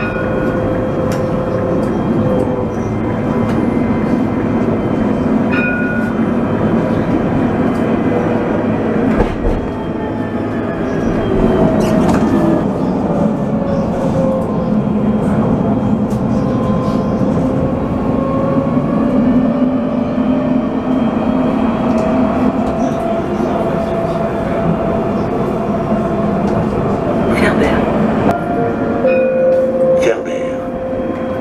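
Electric tram running along its track with a steady rolling rumble and the whine of its traction motors, which glides down in pitch and then rises again as the tram slows and picks up speed. A few short electronic beeps sound near the start, about six seconds in, and near the end.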